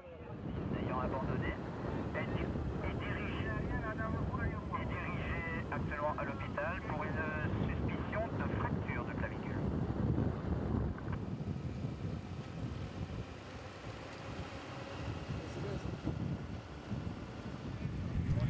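Live road sound from a vehicle moving with a cycling race: wind rushing over the microphone and a motor vehicle running, with voices talking during the first half.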